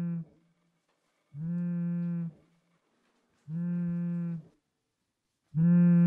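Mobile phone buzzing with an incoming call: steady low buzzes about a second long, repeating roughly every two seconds, the last one loudest.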